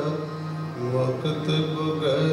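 Sikh kirtan: a harmonium holding sustained reedy chords, a tabla pair keeping the rhythm, and a man singing a devotional hymn over them.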